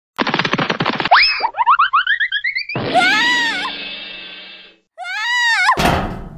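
Cartoon slapstick sound effects for a slip and fall on a rooftop ice patch. A quick pattering run and a rising glide are followed by a string of rising chirps and two long wavering tones, ending in a loud crash just before the end.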